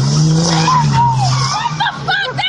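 Diesel pickup truck engine running hard at steady high revs, its pitch rising slightly then easing, over the hiss of tyres spinning on pavement.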